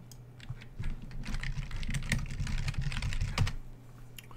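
Fast typing on a computer keyboard, a quick run of key clicks starting about a second in and stopping shortly before the end.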